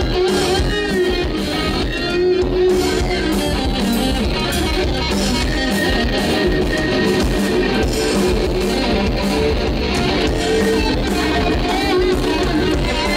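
Live band music: an electric guitar playing lead lines with sustained, bending notes over bass guitar and drums.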